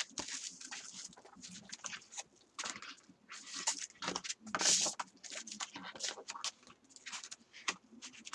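Clear plastic stamp sheet and paper being handled and shuffled on a craft mat: irregular crinkling and rustling, loudest about halfway through.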